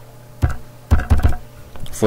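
Computer keyboard keystrokes: one key about half a second in, then a quick run of about four keys around a second in.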